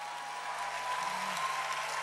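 Large audience applauding and laughing in response to a punchline, the sound swelling slightly over the two seconds.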